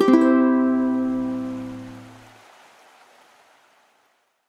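Ukulele outro music ending on a final chord struck at the start, which rings out and fades away over the next two to three seconds.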